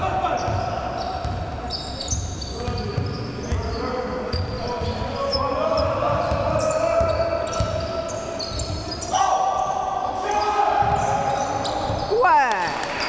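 Basketball game play in a large sports hall: the ball bouncing on the court, with many short high squeaks typical of sneakers on the floor and players' voices calling out.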